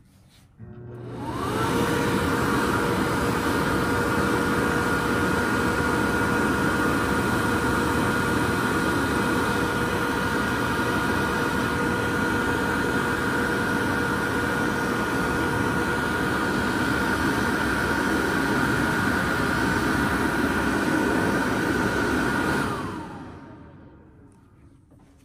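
2003 American Dryer A70TR electric hand dryer starting up, its whine rising to speed within the first second or two. It runs steadily for about 20 seconds with the rush of blown air, then shuts off near the end, the whine falling as the fan winds down.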